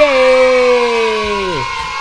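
A man's long, excited shout of "yay", held as one note that sinks slowly and falls away about one and a half seconds in.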